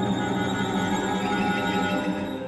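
Contemporary chamber ensemble holding a dense, unchanging layer of many sustained tones at once.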